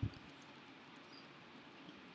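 Faint computer keyboard keystrokes: a few light clicks of typing, with a dull thump right at the start.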